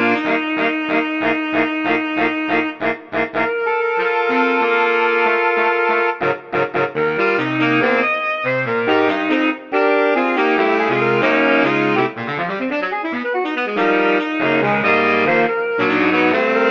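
Saxophone quartet of two alto saxes, tenor sax and baritone sax playing a jazzy arrangement. It opens with short repeated chords, moves into a stretch of held notes, and has a choppy passage of short stabs about six seconds in. Rhythmic chords over a moving baritone bass line follow.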